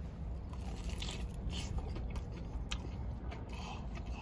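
Close-up biting and chewing of crispy Popeyes fried chicken: irregular crunches of the breading as the mouthful is worked, over a steady low hum.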